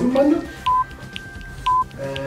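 Countdown timer beeping: a short, high single beep once a second, with faint ticking about twice a second behind it.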